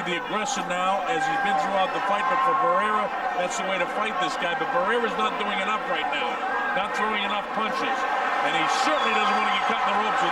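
A man speaking continuously: TV boxing commentary running over the broadcast feed.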